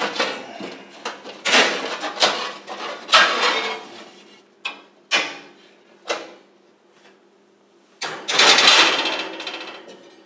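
A sheet of oven-door glass being worked loose and lifted out of the oven door's metal frame: a run of scrapes and rubs, then three sharp clinks, and a longer scrape near the end.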